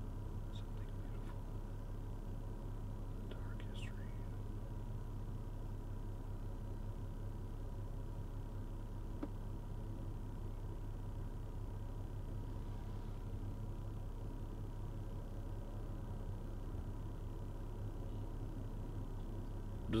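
Steady low hum inside a car cabin, with a faint short sound about four seconds in.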